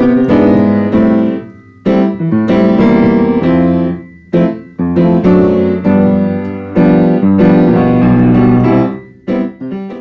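Piano playing a slow progression of sustained seventh chords, with the dominant sevenths in first inversion (V7b): Cmaj7 – E7/G♯ – Am7 – C7/E – Fmaj7 – D7/F♯ – G7. Each chord is struck and held about one to two seconds before the next.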